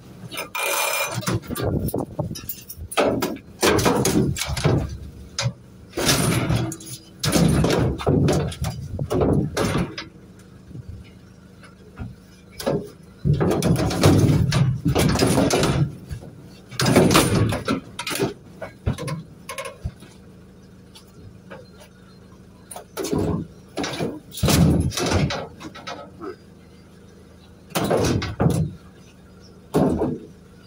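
Scrap, including a bicycle, being shoved and shifted around inside the metal load bay of a van: irregular bursts of clattering and knocking, with short pauses between them.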